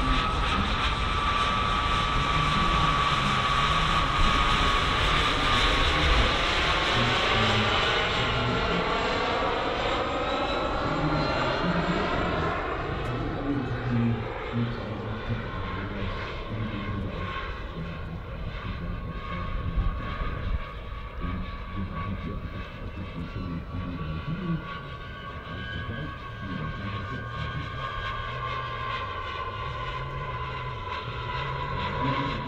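Four JetsMunt 166 model jet turbines on a large RC Airbus A380 running in flight with a steady high whine as the model passes overhead. The sound is loud at first and fades after about ten seconds as it flies away.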